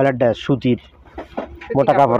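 Speech: a person talking in Bengali, with a short pause in the middle.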